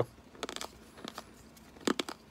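Baseball trading cards being flipped and shuffled by hand: a few soft brushes and flicks of card stock, then one sharper snap of a card near the end.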